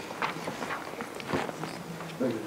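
Footsteps and scattered soft knocks and rustles as people move about a meeting room and handle papers, over a faint steady hum.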